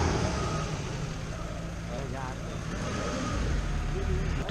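Open-top safari jeep's engine running with a steady low hum, under an even rush of wind and tyre noise, with faint voices in the background.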